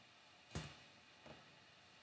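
Near silence, broken by a single sharp keystroke on a computer keyboard about half a second in, entering a typed length into the drawing program, and a fainter tick a little later.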